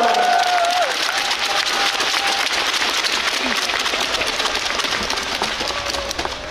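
Audience applauding, a dense clapping that slowly dies down toward the end, after the last drawn-out word of an announcement over the PA about a second in.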